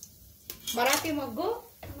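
A light metallic clink or two of a steel plate against an aluminium pressure cooker, under a high-pitched voice that glides up and down for about a second in the middle.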